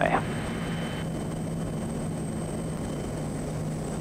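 Steady drone of the Quest Kodiak 100's turboprop engine and propeller heard inside the cockpit at approach power on final, a constant low hum under an even wash of noise.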